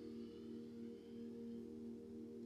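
Faint steady drone of several held low tones that do not change.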